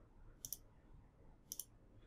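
Two faint computer mouse clicks about a second apart, each a quick double click-sound, made while ticking chart options in a spreadsheet.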